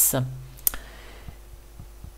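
A single sharp computer mouse click about half a second in, followed by a few faint ticks, as a window on the desktop is closed. The last syllable of a spoken word is at the very start.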